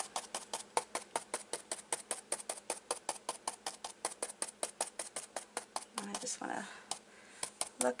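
A stencil brush pounced rapidly up and down on a contact-paper stencil laid over a flour sack towel, making even, quick taps about five or six a second. The taps pause briefly near the end.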